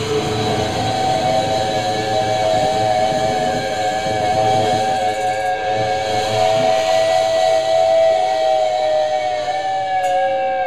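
Electric guitar feedback from the amplifiers: several steady high whining tones held together, one sliding down in pitch near the end.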